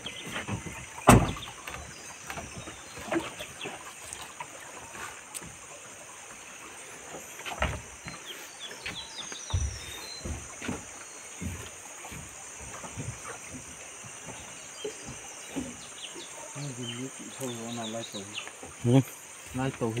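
Loose wooden planks knocking and clattering as they are set down and shifted by hand, the loudest knock about a second in, over a steady high insect drone.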